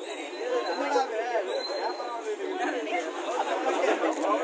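Several people talking at once: overlapping chatter of a small group.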